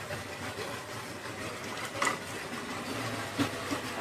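Steady low background rumble with a couple of faint knocks.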